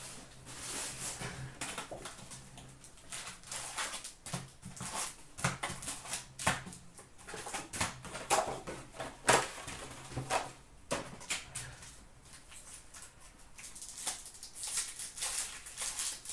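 A cardboard box of hockey card packs being opened and its wrapped packs handled and set down, an irregular run of rustles, crinkles and taps.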